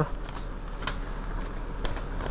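A sheet of printer paper being unfolded and handled, with two faint crinkles about a second apart, over a low steady hum.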